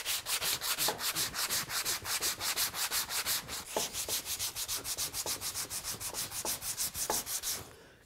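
Hand sanding block with sandpaper glued on, scuffed rapidly back and forth over a veneered marquetry panel, about six quick scraping strokes a second. It is scuff sanding through the gum tape on the thin veneer. The strokes stop just before the end.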